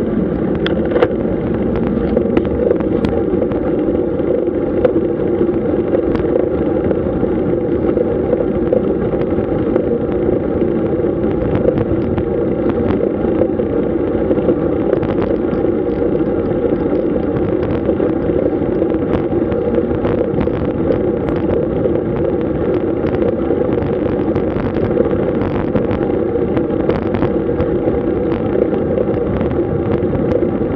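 Steady wind rush on the microphone and tyre rumble from a road bike riding along an asphalt road at about 20 km/h, with a few faint scattered clicks.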